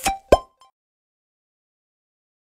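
Short outro sound-effect sting: a few quick clicks with brief ringing tones and one quick falling note, over within about half a second.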